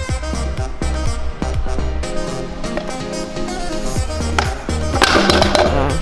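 Stunt scooter's hard wheels rolling and clattering on stone paving during a flatground trick, under background music with a steady beat. There is a louder rush of noise about five seconds in.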